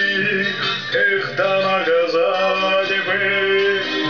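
A man singing a slow Russian song in the Cossack style, accompanying himself on an acoustic guitar.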